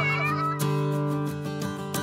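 Background guitar music with strummed chords, over which a high, gliding voice-like sound trails off in the first half second.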